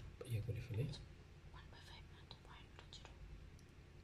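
A man's voice speaks briefly and quietly, then goes into soft muttering under his breath, with a few faint light ticks.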